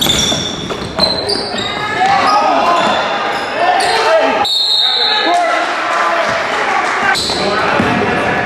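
Basketball game in a gym: the ball bouncing on the hardwood court, sneakers squeaking, and players and spectators shouting.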